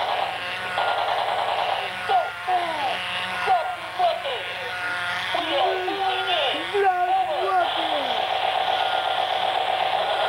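A small motor buzzing steadily, with many short rising and falling chirps or warbles over it through the middle; the buzz comes through stronger near the end.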